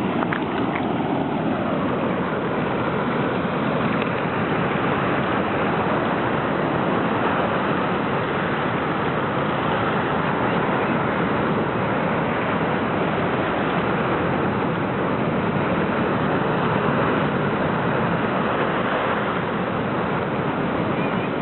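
Rough sea surf breaking over rocks and washing up the sand, a loud, steady rush of water without a break.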